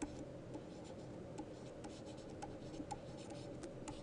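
Quiet room tone with a faint steady hum and light clicks about two or three times a second, typical of pen or stylus tapping and scratching.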